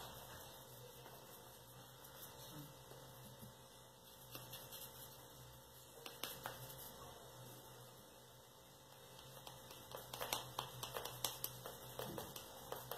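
Faint scattered taps and light rustles of a small paintbrush dabbing dry pastel chalk onto a cold-porcelain (biscuit) model, getting busier near the end, over a faint steady hum.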